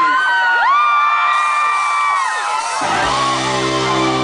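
Concert audience cheering, with one long high whoop held for about two seconds; about three seconds in, the rock band comes in with a sustained full chord on electric guitar and bass.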